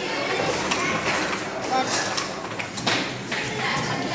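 Indistinct chatter of several children in a large, echoing hall, with a few short knocks and rustles from handling.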